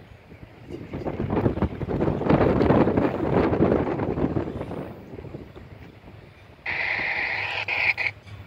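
Wind buffets the microphone for several seconds. Near the end, an approaching EMD diesel freight locomotive's air horn starts suddenly with one steady blast as the train nears the grade crossing.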